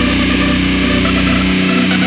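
A hardcore rock band's recorded song playing, in a passage of held chords; the deep bass drops out about a second and a half in.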